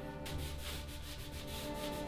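Rubbing along the back of a wooden picture frame in quick, repeated strokes, several a second, beginning just after the start.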